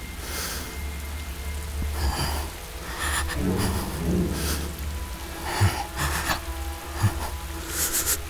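Film soundtrack: slow background music over a steady rain-like hiss and low rumble, with swells of hiss coming every second or so.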